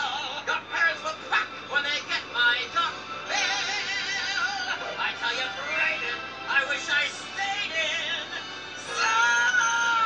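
A cartoon character singing a birthday song over musical backing, his voice wavering with vibrato in short phrases, then holding one long note near the end.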